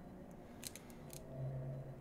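A few faint crinkles and ticks from a plastic-bagged comic book being handled, with a faint low hum in the second half.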